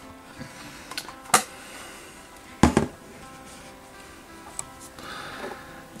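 Quiet background music, with two sharp knocks about a second and a half and nearly three seconds in and a few fainter ticks.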